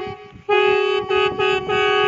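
Several conch shells blown together on one steady note, in short repeated blasts about three a second, with a brief break about half a second in.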